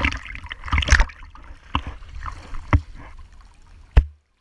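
Swimming-pool water splashing and sloshing against an action camera held at the surface, in irregular splashes, the loudest about a second in and again near three seconds, over a low rumble of water buffeting the microphone.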